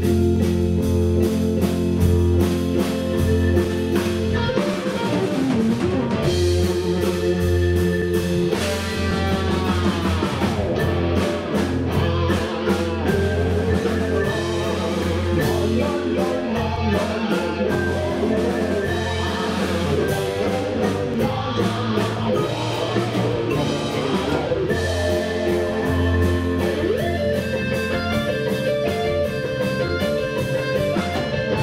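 Live instrumental rock-fusion band playing: an electric guitar leads over drums, bass and keyboards, with sliding, bending guitar notes about ten seconds in.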